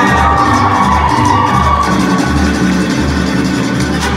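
Live mariachi ensemble playing, with strummed guitars over a steady bass note that pulses about twice a second and a melody line above.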